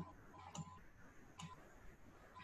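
Near silence with three faint, short clicks spaced unevenly across two seconds.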